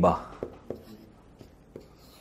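Marker pen writing on flip-chart paper: a few faint, short scratching strokes and ticks as an Arabic word is written out.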